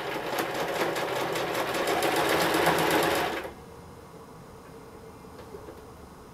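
Sewing machine stitching through fabric, a fast even run of needle strokes that grows a little louder and then stops about three and a half seconds in.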